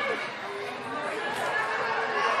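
Indistinct chatter of several overlapping voices in an indoor arena, no single speaker clear.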